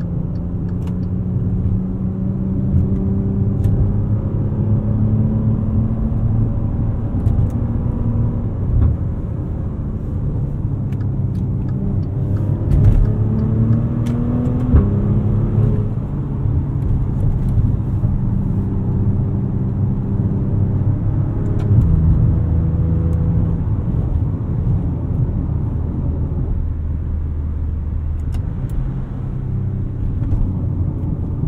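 Maserati Levante GranSport heard from the driver's seat while driving: the engine's low drone under road and tyre noise. About twelve seconds in, the engine note climbs as the car accelerates, then drops back a couple of seconds later as it upshifts.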